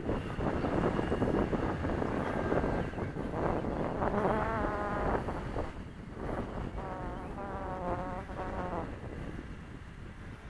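Electric RC model airplane motor whining overhead, a buzzing whine that wavers up and down in pitch in two passes, about four seconds in and again from about seven to nine seconds. Wind rumbles on the microphone throughout, heaviest in the first half.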